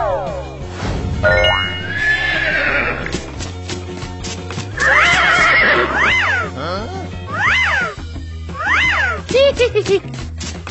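Cartoon background music with sound effects: a falling pitch glide at the start and a rising one about a second in. From about five seconds in there are several short rising-and-falling calls from a cartoon donkey, three of them clear near the end.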